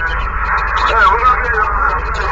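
A garbled, unintelligible voice received over a CB radio on 27.085 MHz, cut off above the voice range and laid over steady static hiss and a low hum.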